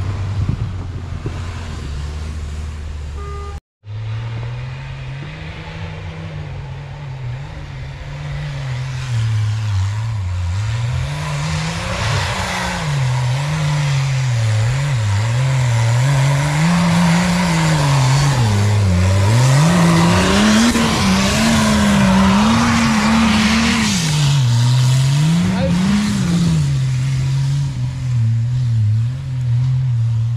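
Off-road SUV engine pulling up a snow-covered track, its revs climbing and dropping again and again, with tyre and snow noise that grows louder through the middle of the stretch. The sound drops out for an instant about four seconds in.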